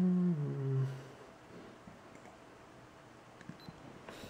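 A person's low, closed-mouth 'mm-hmm' hum in two short parts, the pitch dropping on the second, ending about a second in. Quiet room tone with a few faint ticks follows.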